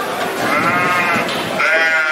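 Sheep bleating twice in the market pens, one long wavering bleat and then a second near the end, over the background noise of the market.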